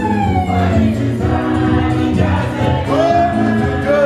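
Live gospel music: an electronic keyboard with group singing and a steady beat, amplified through a loudspeaker.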